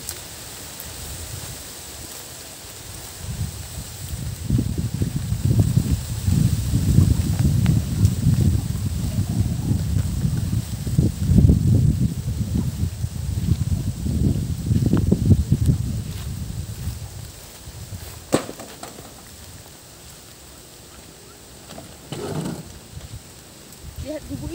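Wind buffeting the microphone, a gusty low rumble that builds a few seconds in, stays strong for about twelve seconds and then dies down. A single sharp click comes near the three-quarter mark.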